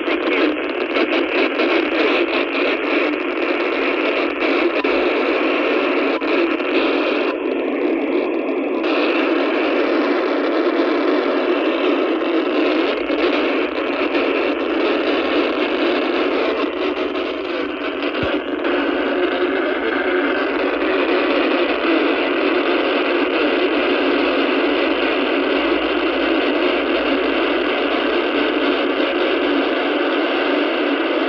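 Icom IC-705 transceiver's speaker in FM receive, tuned to the SO-50 amateur satellite's 70 cm downlink: a loud, steady hiss of a weak satellite signal, with a brief click about eighteen seconds in.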